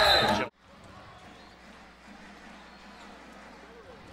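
A play-by-play commentator's voice cuts off suddenly about half a second in. After that there is faint basketball arena sound: a low crowd murmur, with the ball being dribbled on the court.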